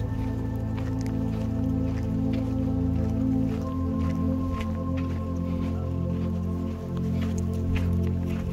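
Background music of slow, sustained layered tones over a low drone, a new higher note coming in about halfway through, with scattered faint clicks.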